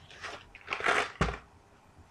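Small cardboard candy box being handled and tipped to shake out a candy: a couple of short rustles, then a single knock about a second in.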